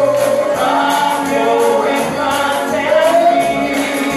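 Live gospel worship singing: a singer on a microphone leads the congregation, with a tambourine jingling in a steady beat about twice a second.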